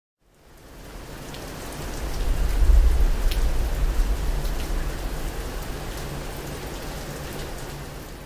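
Steady rain falling, fading in at the start, with a deep low rumble that swells to its loudest about two to three seconds in and then settles, the rain tapering off near the end.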